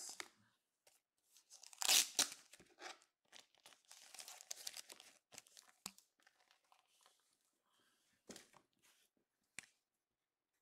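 Packaging torn open with a loud rip about two seconds in, followed by crinkling and crackling as a trading-card box is unwrapped and handled.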